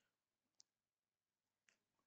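Near silence, broken by two faint, brief clicks, the first about half a second in and a weaker one near the end.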